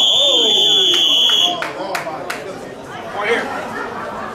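Electronic match-timer buzzer sounding one steady, high beep lasting about a second and a half, over voices in the hall.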